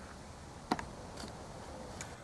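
Low, steady background noise with a single sharp click about two-thirds of a second in.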